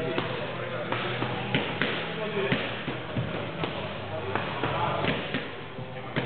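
Strikes landing on a stack of tyres: a run of irregular thuds, roughly one or two a second, over background talk and music.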